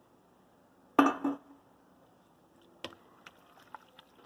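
Wooden spoon knocking against a cooking pot full of noodles and vegetables while stirring: one louder knock about a second in, then a few light clicks near the end.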